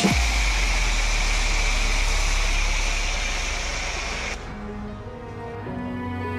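Pressure washer with a snow foam cannon spraying thick foam onto a car: a steady hiss of spray over a low hum, cutting off suddenly about four seconds in. Soft background music follows.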